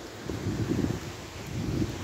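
Wind buffeting the camera microphone: a low, uneven rumble with no voice.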